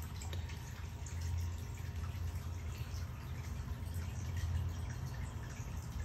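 Aquarium filtration running: water trickling with small drips over a steady low hum.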